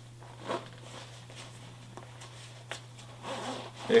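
The zipper of a Cotopaxi nylon duffel bag being worked by hand where it has caught the bag's own fabric. A few faint zipper clicks and some soft rustling of the fabric.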